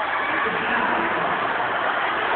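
Crowd babble in a large hall: many voices blending into a steady, even murmur with no single voice standing out.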